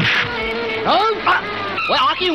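Fight-scene film soundtrack: a punch sound effect right at the start over a held music note, then short gliding, whining vocal cries from about a second in.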